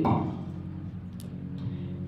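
A soft, steady chord held in the background, likely a keyboard. It starts under the tail end of a woman's word at the very beginning, and there is one faint click partway through.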